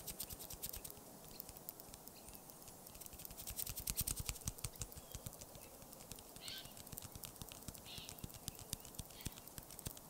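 Close-miked ASMR tapping and scratching: a fast, irregular stream of light taps and clicks, busiest around the middle, with a few short scratching strokes in the second half.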